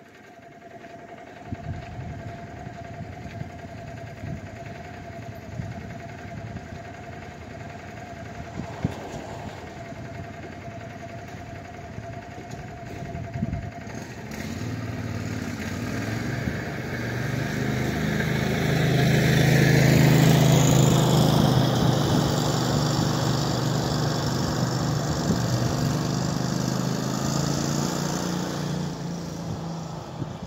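Landmaster LM650 UTV's 653 cc engine idling, then picking up speed about halfway through and running louder and higher for about fifteen seconds before easing off near the end.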